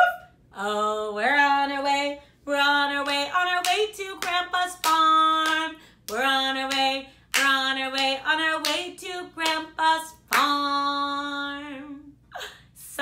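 A woman singing a children's song unaccompanied, in held, tuneful phrases, while clapping her hands along.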